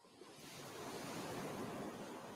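Ocean surf: a wave washing in, a surge of rushing water noise that swells out of near silence and then slowly eases.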